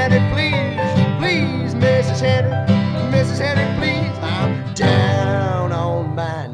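Acoustic guitar strummed steadily between sung lines, with a higher melodic line that slides up and down in pitch above it.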